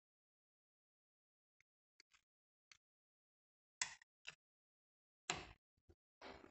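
Near silence broken by a handful of faint, short clicks and knocks, the loudest two in the second half: the aluminium cylinder of a small Honda motorcycle engine being worked down over its studs and centred on the piston.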